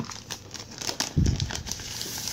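A clear plastic comic-book sleeve crinkling as hands handle and turn the bagged comic, with a dull low thump about a second in.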